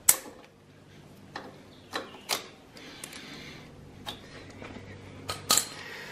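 Side cutter pliers snipping through a plastic zip tie with one sharp snap, followed by a few scattered light clicks.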